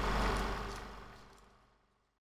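Edited-in transition sound effect: a low rumble that fades away over about a second and a half, the tail of a burst of sharp hits just before.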